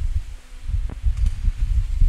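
Low, irregular rumbling and thumping of a handheld phone microphone being jostled while its holder walks, with one faint click about a second in.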